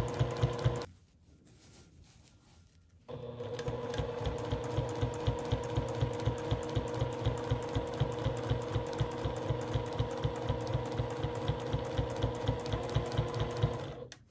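Sewing machine stitching binding onto a quilted table runner, running at a steady pace of about four stitches a second over an even motor hum. It stops about a second in and starts again about three seconds in.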